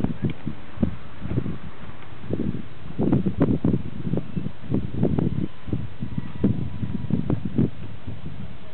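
Wind buffeting a camcorder's microphone: irregular low rumbling gusts over a steady hiss, heaviest around the middle and again near the end.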